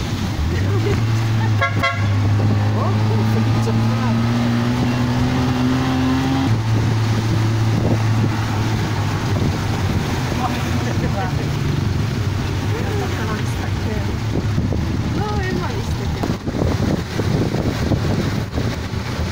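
Small tuk-tuk engine running under way, its note climbing as it accelerates and dropping at a gear change about six and a half seconds in, with a short horn beep about two seconds in. Tyres hiss on the wet road throughout.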